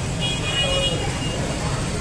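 Road traffic rumbling steadily, with a vehicle horn sounding once for about a second, starting a quarter second in.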